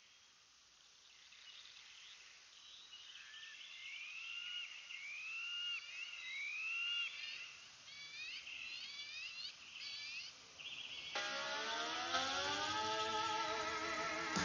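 Countryside ambience fading in, with birds chirping repeatedly in short rising-and-falling calls. About eleven seconds in, a car engine comes in and rises steadily in pitch as it approaches, louder than the birds.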